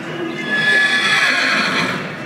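A horse whinnying once: a loud, high call lasting about a second and a half.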